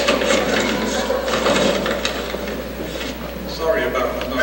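Crowd noise in a large room: overlapping voices with a dense, rapid clatter that eases off after about three seconds, when single voices stand out.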